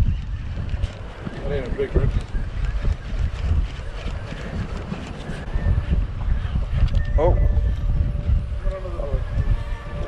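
Gusty wind rumbling on the microphone, with a short exclamation about seven seconds in.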